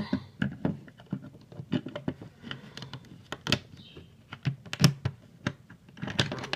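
Lego plastic pieces clicking and knocking against a tabletop as a brick-built figure is handled and set down, an irregular run of quick taps with a couple of louder knocks in the second half.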